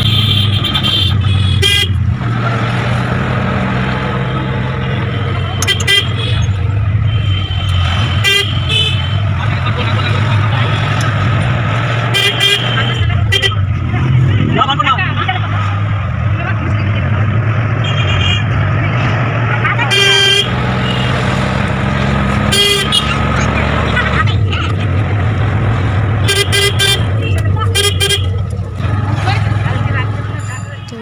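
Auto-rickshaw engine running steadily under way, heard from inside the cab. Short horn toots sound again and again, every few seconds.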